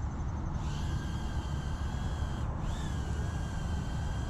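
RH807H mini ducted-fan quadcopter's motors spinning up for a one-key auto takeoff. A high steady whine comes in about half a second in, breaks off briefly past halfway and comes back bending up in pitch, over a steady low rumble.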